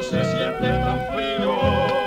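Colombian folk duet record: a held, wavering melody over a steady bass line, with no sung words.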